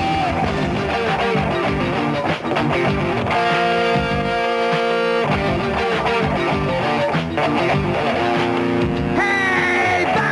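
Rock music led by electric guitar, playing held chords over a steady band backing.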